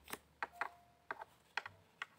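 Tarot cards being handled and laid down on a varnished wooden table: a series of light, sharp clicks and taps, roughly every half second.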